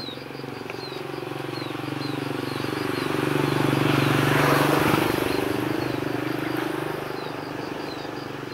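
A motor's drone swells to its loudest about halfway, then fades, like a motor vehicle passing. A short, high, falling chirp repeats about twice a second throughout.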